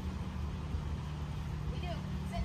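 Steady low hum of a running motor, with a short high call near the end.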